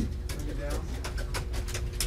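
Press-room sound in a pause of speech: a steady low rumble with a faint hum, a run of light clicks, and a faint low murmur of a voice about half a second in.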